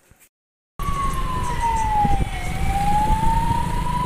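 Emergency vehicle siren sounding from a moving vehicle, starting abruptly about a second in. Its single tone slowly falls, then slowly climbs again, over a heavy low rumble of engine and road noise.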